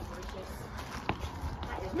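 Footsteps climbing concrete steps: a few soft steps, with one sharper tap about a second in, over a low rumble.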